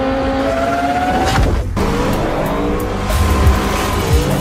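Sports car engine revving hard, its pitch climbing, then breaking off briefly near halfway before rising again, over trailer music.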